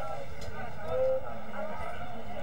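Footballers' distant shouts and calls across the ground over a steady wind rumble on the microphone, with one louder drawn-out call about a second in.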